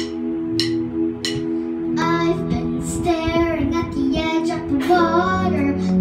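A young girl singing into a microphone over an instrumental accompaniment of steady held notes. For about the first two seconds only the accompaniment plays, with a few sharp ticks, and then her voice comes in.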